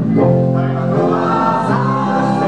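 A mixed group of men and women singing a song together in chorus, held notes over an accordion and guitar accompaniment, played live through a stage sound system.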